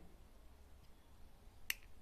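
Quiet room tone, broken by a single sharp click near the end: a pair of scissors snipping the beading thread.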